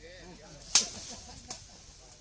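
Sepak takraw ball kicked hard: one sharp smack about three-quarters of a second in, then a lighter hit about a second later, over spectators' chatter.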